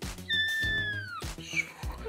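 A Scottish kitten meowing: one long, high-pitched mew that holds its pitch and then slides down at the end, followed by a shorter, quieter squeak, over soft background music.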